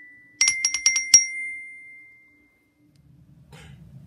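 Glockenspiel with metal bars struck with two mallets: a quick run of about six notes, the last one the loudest, ringing on and fading out over about a second.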